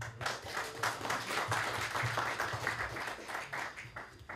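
Audience applauding, a dense patter of many hands clapping that dies down near the end.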